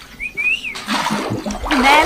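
Rushing, splashing water that starts a little under a second in, after a brief high rising chirp.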